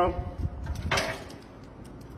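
A few short clicks and a clunk from a metal key drop box as a key is pushed into its slot and its flap, with the loudest clunk about a second in.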